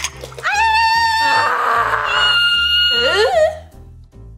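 Several women's voices shrieking together in long, high-pitched held screams for about three seconds, wavering and breaking into quick rising and falling glides near the end. Background music with a steady low beat runs underneath.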